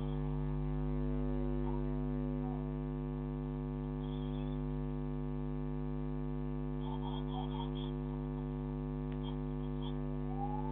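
Steady electrical mains hum, a buzzing drone of many fixed tones at an even level, picked up by a security camera's audio.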